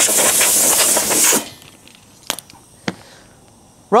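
Compressed air hissing loudly out of an air tool on the compressor's hose, cut off sharply after about a second and a half, then two sharp clicks.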